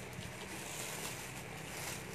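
Plastic clothing bags rustling and crinkling as they are handled and pulled from a pile, over a steady low hum.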